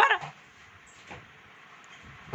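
A short, high-pitched voice call at the very start, then a quiet room with one faint knock about a second in.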